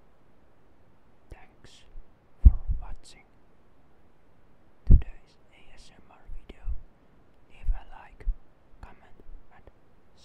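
Whispering close into a microphone in short broken phrases with pauses, with a few low pops on the mic.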